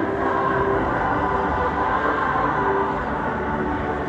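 A large choir singing, holding long sustained notes that ring out in a big indoor atrium.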